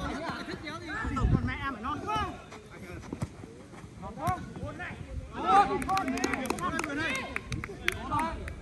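Football players shouting and calling to each other across the pitch, quieter through the middle, then louder again from about five and a half seconds in, with several short sharp knocks among the shouts.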